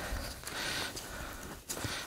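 Faint rustling and rubbing of a foam rod being pushed into the fabric sleeve of a door draft blocker, with a few light ticks near the end.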